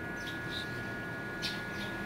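A few short bird chirps over a faint, steady high-pitched whine.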